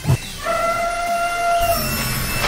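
Advertisement sound effect: a short low hit, then one steady pitched tone held for just over a second.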